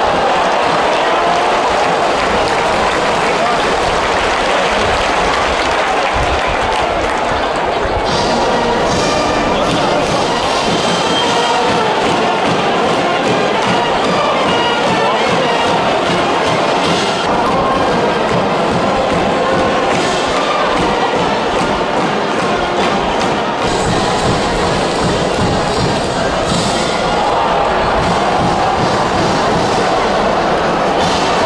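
Baseball stadium cheering section singing and chanting over band music, a loud, dense, unbroken wall of crowd voices and instruments.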